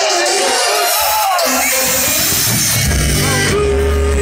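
Live punk rock band playing loud in a venue, with crowd voices over the start. The bass comes in about a second in and grows much heavier near three seconds.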